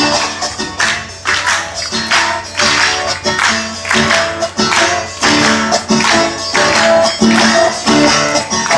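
Live country music, amplified: a strummed acoustic guitar playing a steady rhythm, with hands clapping along in time.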